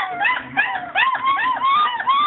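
Four-week-old basset hound puppy whimpering in a rapid series of short, high cries that rise and fall in pitch, about three a second.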